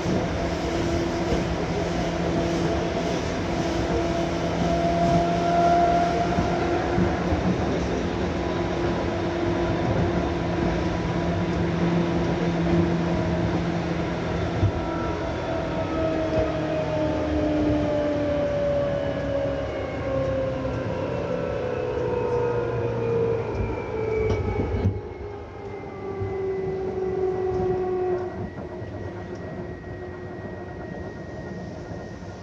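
Seibu 2000-series electric train, set 2085F, running on the Ikebukuro Line. First a steady motor and gear hum with rumbling rail noise, then from about halfway the whining tones fall steadily in pitch as the train slows, and the running noise drops away near the end.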